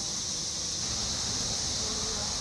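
A dense chorus of 17-year periodical cicadas making one steady, unbroken high-pitched drone.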